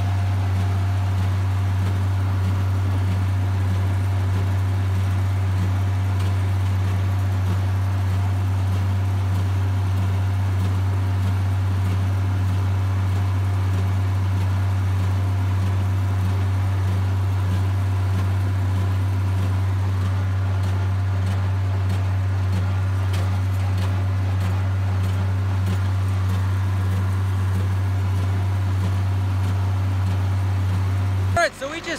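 International Harvester tractor engine running at a steady speed under way, a constant loud low drone heard from the driver's seat.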